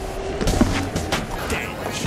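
Background music with a beat, sharp percussive hits repeating through it.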